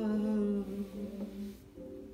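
A voice humming a held note over background music, fading out about a second and a half in while the music carries on more quietly.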